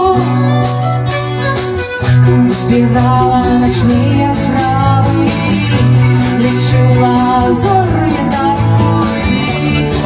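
Live band music: strummed acoustic guitar, electric bass and drum kit under a sustained melody line in an instrumental passage. The band gets louder about two seconds in.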